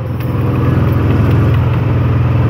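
Engine of a side-by-side utility vehicle running steadily while it drives over bumpy ground, heard from the seat. It grows a little louder in the first half second.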